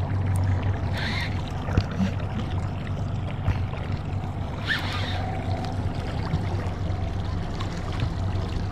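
Boat's outboard motor running steadily at trolling speed, a low even hum, with water noise around the hull.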